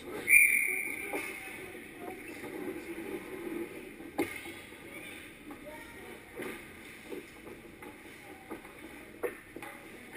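Referee's whistle blown once, a short shrill blast about a third of a second in, stopping play at an ice hockey game. Afterwards, scattered sharp knocks of sticks and skates, the loudest about four seconds in, over the murmur of the rink.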